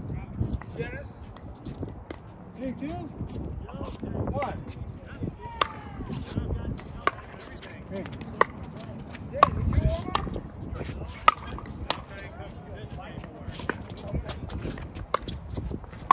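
Pickleball rally: paddles striking a hard plastic pickleball, a string of sharp pops at irregular intervals of about a second, thickest through the middle and later part. Voices sound in the background.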